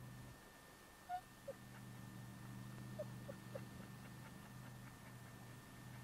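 Faint dog whimpering: about five short high squeaks between one and four seconds in, over a steady low hum.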